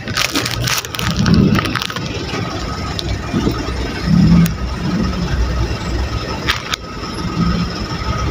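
Low rumble of a car creeping forward in queued traffic, heard from inside the cabin. Crackling and clicking close to the microphone during the first two seconds and again briefly shortly before the end.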